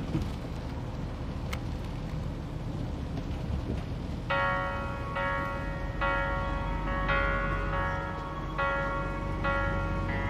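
Low steady rumble of a bus interior, then about four seconds in, soundtrack music starts: held chords that change roughly every second over the continuing rumble.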